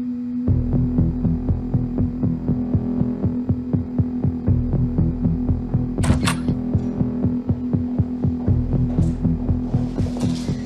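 Tense dramatic underscore: a steady low drone joined about half a second in by a rhythmic throbbing pulse, with a brief swish about six seconds in.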